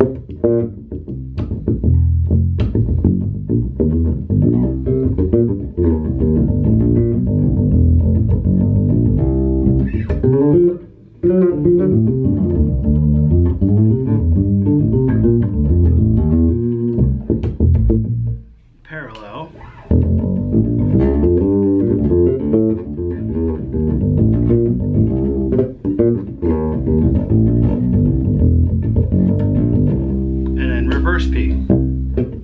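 Skjold Greyling electric bass with a passive Skjold pickup, played fingerstyle through a bass amp: a solo bass line of low plucked notes that breaks off briefly twice, once about a third of the way in and again just past the middle.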